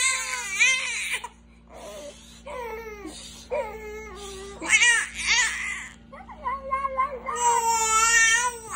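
A baby vocalizing in several long, high-pitched cooing calls whose pitch wavers, with short pauses between them.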